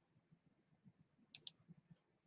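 Near silence broken by two faint, quick clicks close together about one and a half seconds in.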